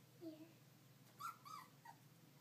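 Four-week-old Goldendoodle puppies whimpering faintly: a short low sound near the start, then three short, high squeaky whines about a second in.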